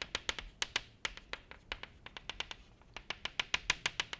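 Chalk tapping rapidly on a blackboard as dots are stippled inside a drawn circle, about eight sharp taps a second. The taps thin out and pause briefly past the middle, then pick up again.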